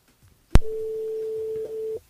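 Telephone ringback tone over the phone line as the host's call to a listener rings out: a click about half a second in, then one steady, mid-pitched beep lasting about a second and a half, the cadence of the French ringing tone.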